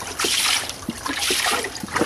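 Water splashing and trickling into a murky fish tank in repeated surges, about one a second.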